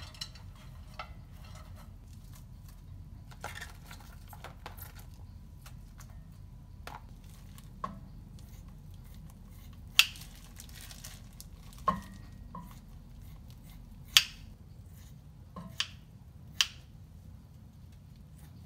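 Kitchen scissors snipping through raw pork belly slices over a stainless steel pot: about five sharp snips in the second half, roughly two seconds apart. Before them, soft rustling and light clinks as bean sprouts and onion go into the pot.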